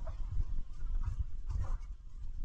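Low, steady rumble of a truck driving along, with a few faint short squeaks or whines over it, the clearest about a second and a half in.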